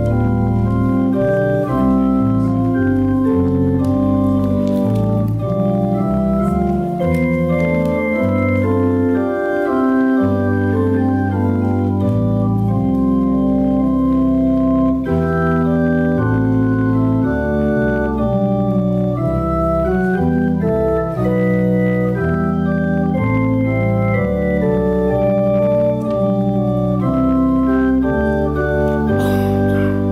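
Church organ playing the opening hymn's tune in full sustained chords that move every second or so, steady and loud, with no singing yet.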